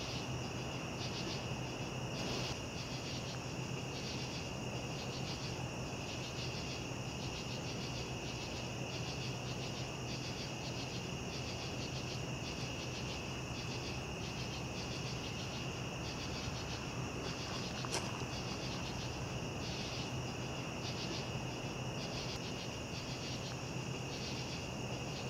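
Night insect chorus: a steady high cricket trill with a second insect calling in regular pulses, over a low steady hum. One sharp click about three quarters of the way through.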